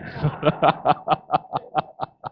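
A man laughing: a run of short, evenly spaced laughs, about five a second, fading out at the end.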